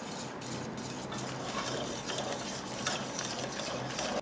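Wire whisk beating wheat-flour cake batter in a stainless steel bowl: a steady, rapid scraping and clicking of the wires against the metal.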